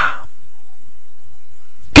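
A drawn-out vocal cry trails off at the start, then a near-silent pause, and a man's speech begins abruptly near the end.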